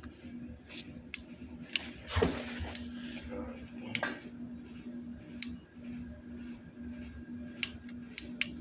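Short high electronic beeps a few times, irregularly spaced, from a gas fireplace's remote control system as buttons are pressed. Between them come sharp clicks and handling rustle, and a low steady hum from about two seconds in.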